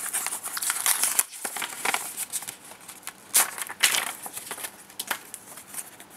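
Paper cards being handled, rustling and crinkling in irregular small crackles, with two louder crackles about three and a half and four seconds in.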